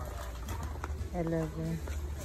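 A short low voice-like hum in two parts, about half a second long, a little over a second in, over a steady low background hum with faint handling clicks.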